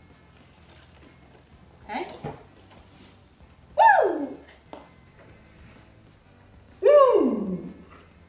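Three exclamations of surprise as the foam erupts, each a drawn-out 'whoa' that slides down in pitch over about half a second. The second and third, about four and seven seconds in, are the loudest.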